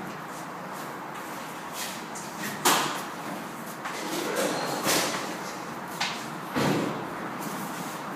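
A large mattress being manhandled through a narrow stairwell: several dull knocks and scraping rushes as it bumps and drags against the walls and banister, the loudest a little under three seconds in.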